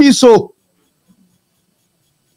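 A man's voice speaking into a microphone, cut off about half a second in, followed by dead silence.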